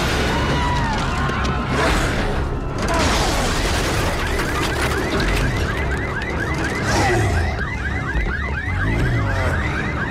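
An electronic siren-type alarm wailing in rapid repeating sweeps, about four a second, which starts about four seconds in. It sits over a dense film sound mix of low rumbling and crashing debris.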